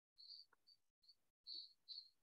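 Faint, short high chirps of a cricket, repeated irregularly, with the sound cutting in and out abruptly between them.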